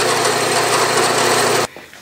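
Vertical milling machine's spindle running steadily, turning a boring head whose carbide-tipped single-point boring bar is cutting a through bore in an aluminium casting. The machine sound stops abruptly near the end.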